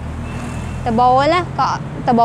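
A steady low engine hum, with a woman's voice speaking briefly about a second in.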